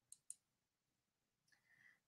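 Near silence, with two faint clicks about a sixth of a second apart near the start.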